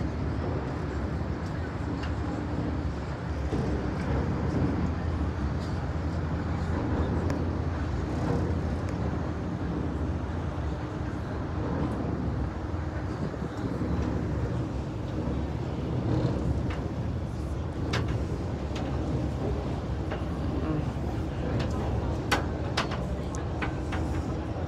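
Steady low rumble of a harbour boat under way: engine drone and wind on the microphone, with a few short clicks near the end.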